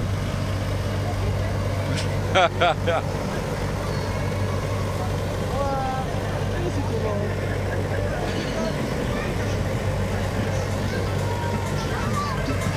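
A steady low motor drone with a constant hum runs through. A brief burst of voices comes about two and a half seconds in.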